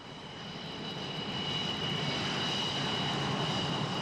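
Convair F-106 Delta Dart's J75 turbojet at takeoff power as the fighter lifts off. The sound builds over the first second or so, then holds as a steady rush with a high whine over it.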